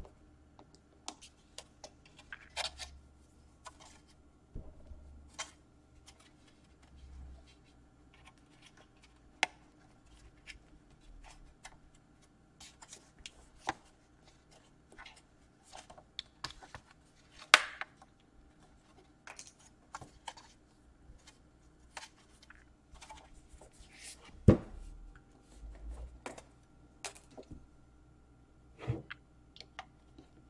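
Scattered clicks, scrapes and taps of hands and a plastic pry pick working at the bottom cover of an ASUS UX301L laptop, trying to pry the stuck panel loose. Two louder sharp knocks stand out, one a little past halfway and the loudest about three-quarters through.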